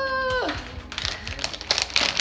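A drawn-out 'uh' ends about half a second in, followed by a second and a half of crinkling and clicking as plastic earring packaging is handled.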